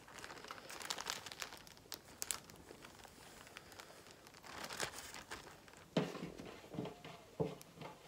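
Thin clear plastic bag crinkling irregularly as it is handled around a damp mud ball, the crackles densest in the first half.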